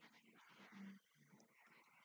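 Near silence: room tone, with one faint, short low hum a little under a second in.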